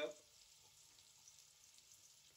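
Near silence with a faint, steady sizzle of food frying in a pan.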